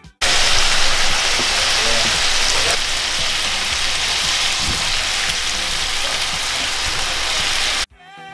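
Food sizzling hard in a hot frying pan: sliced abalone, mushrooms and bok choy frying in oil, a loud, even hiss. It starts suddenly just after the start and stops suddenly just before the end.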